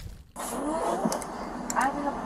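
Faint, indistinct voices in a car cabin, with a few light clicks of typing on a keyboard.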